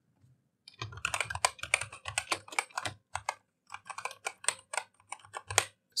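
Typing on a computer keyboard: a quick, irregular run of keystrokes that starts about a second in and goes on until just before the end.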